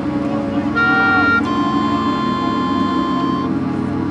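Marching band music: a sustained chord is held throughout, and a bright, high sustained chord enters about a second in and drops away after about three and a half seconds.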